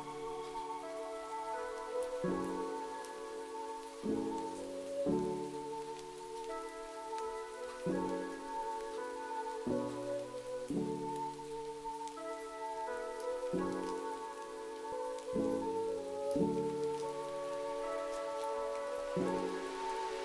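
Steady rain hiss layered with soft, slow lofi hip hop chords that change every second or two, with no drum beat or deep bass.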